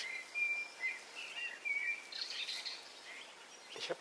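European robin singing: a few short, thin, high whistled notes in the first half, then a brief higher trill.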